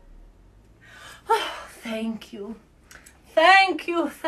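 A woman's voice: a breathy gasp about a second in, then short spoken phrases, loudest near the end.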